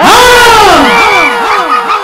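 A comedy sound effect: a loud pitched tone that swoops down at the start, then repeats as a run of falling glides that fade away like an echo.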